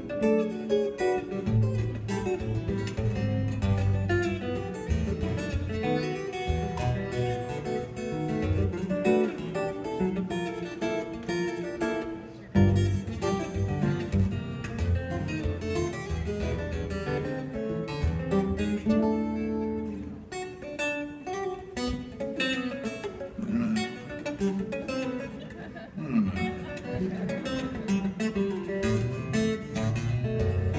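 Solo acoustic guitar played fingerstyle in a live concert instrumental, with a busy run of picked notes over a moving bass line and a sharp accented strike about twelve seconds in.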